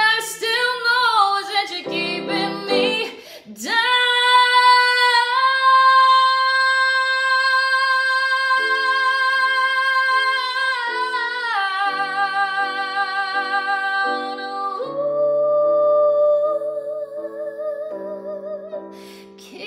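A woman singing a ballad with digital piano accompaniment. A few seconds in she holds one long high note that steps up once and later drops, then holds another note near the end, over repeated piano chords.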